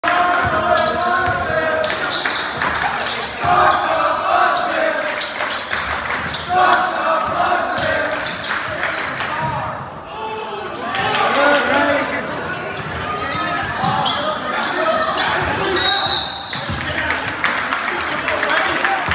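Basketball bouncing on a hardwood gym floor during play, with repeated sharp thuds, under shouting voices of players and spectators echoing through the gym.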